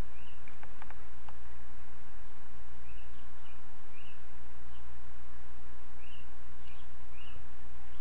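Steady low hum and hiss of a recording setup, with a few sharp mouse clicks in the first second and a half. Short, high, rising chirps come about once a second from about three seconds in.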